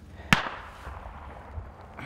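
A single sharp bang about a third of a second in, followed by a long echo that dies away over about a second, the way a shot or blast rings off mountain slopes.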